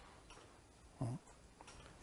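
Quiet room tone with a single short, low, voice-like sound about a second in.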